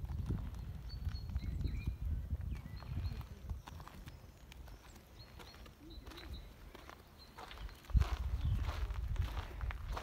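Outdoor ambience with a low, irregular rumble on the microphone, louder at the start and again near the end, a sharp thump about eight seconds in, and faint high chirps.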